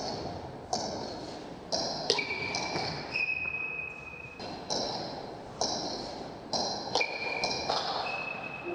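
Table tennis rally: the ball is struck by the bats and bounces on the table, giving about a dozen sharp clicks, roughly one every half second to second. Each click is followed by a short, high ringing.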